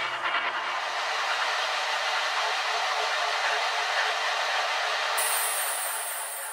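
Drum and bass track in a beatless breakdown: the drums drop out, leaving a steady wash of filtered noise. A thin high shimmer joins near the end.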